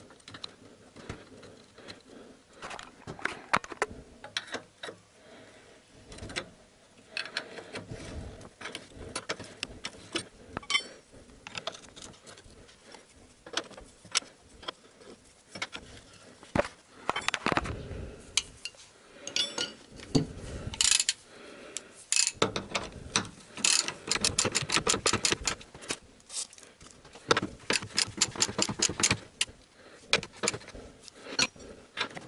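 Ratchet wrench clicking in quick runs as the stabilizer bar bushing bracket bolts are turned, among clinks and knocks of metal tools and parts being handled.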